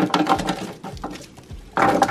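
Cubes of raw sweet potato tipped from a ceramic dish onto a parchment-lined baking sheet: a quick patter of soft knocks and paper rustle in the first second, thinning out after.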